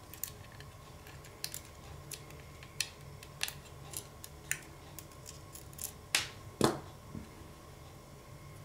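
Small screwdriver turning the side screws of a metal laptop hard-drive tray holding an SSD: a run of small, irregular clicks and scrapes of metal on metal, with two louder knocks a little over six seconds in.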